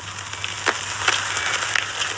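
Steady hiss of outdoor ambience on a film soundtrack, growing slightly louder, with a few soft clicks over a low steady hum.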